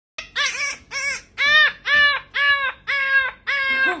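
Small puppy screaming while being combed: seven high, arched cries, about two a second. It is a dramatic protest at light grooming.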